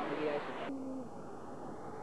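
People's voices over a steady rushing background, ending in a short held low note. The sound cuts off abruptly under a second in, leaving a quieter steady hiss.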